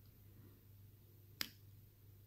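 Near silence with a low hum, broken by a single short, sharp click about one and a half seconds in.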